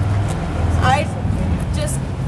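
Steady low hum of a motor vehicle engine running, with a short spoken word about a second in.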